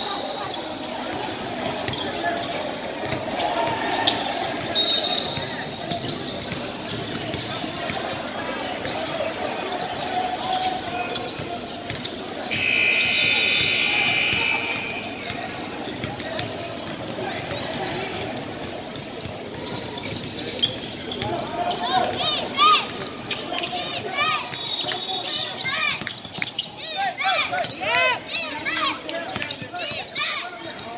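Indoor basketball gym with spectators talking and a basketball bouncing on the hardwood floor. A held high tone sounds for a couple of seconds near halfway. In the last third, sneakers squeak repeatedly on the court as play resumes.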